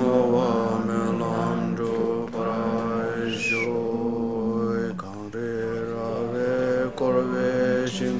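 Tibetan Buddhist prayer recitation: a low voice chanting in long, level held notes, pausing for breath a few times.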